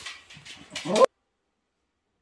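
West Highland white terrier nosing under a chair at something stuck there, with small rustling noises, then a short, loud whine about a second in that cuts off suddenly.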